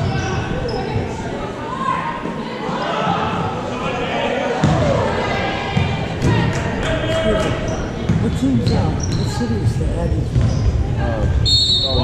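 A basketball dribbled on a hardwood gym floor, a run of short sharp bounces about halfway through, under people talking and calling out, all echoing in a large gymnasium.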